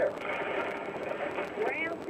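Radio news broadcast in a car: a steady hiss of noise between the newsreader's sentences, with a voice coming in near the end.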